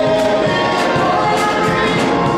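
Gospel choir singing with organ accompaniment, with a steady beat of hand claps about three to four a second.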